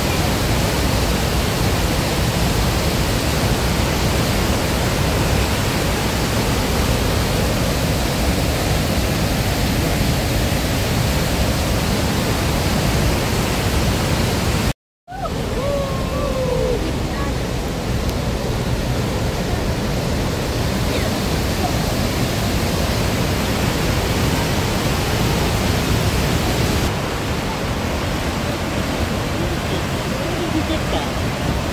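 Steady, loud rush of a large waterfall, the Athabasca Falls, with a brief break about halfway where the sound cuts out for a moment.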